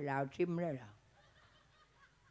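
A man's low voice says a short word or two in a puppet character's voice, and it falls quiet about a second in.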